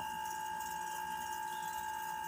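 Steady background hiss with a faint, unchanging high-pitched hum: room tone in a short pause between speech.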